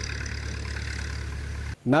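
A steady low rumble with a faint high hum above it, like an engine running, that cuts off abruptly just before the end.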